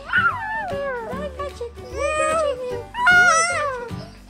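A young child squealing and shrieking with laughter while being tickled: a run of high, gliding squeals, the loudest and highest about three seconds in.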